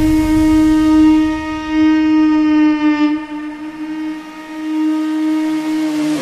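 A conch shell (shankh) blown in one long held note as a sample in a DJ remix. It dips in loudness about four seconds in and swells again.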